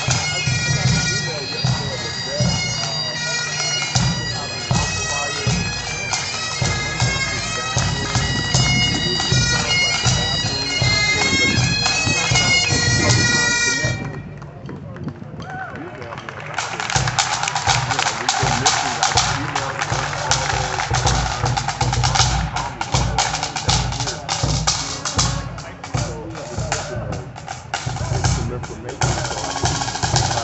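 Pipe band: bagpipes play a tune over their steady drones, with drums beneath. The pipes stop about 14 seconds in, and after a short lull the snare and bass drums play on alone in rapid strokes and rolls.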